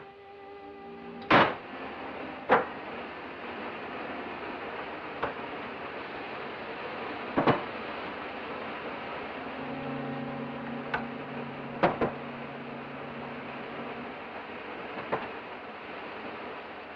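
Steady hiss of steam from laboratory apparatus, broken by sharp clanks and clinks of metal and glassware at irregular intervals. A low hum joins in for a few seconds past the middle.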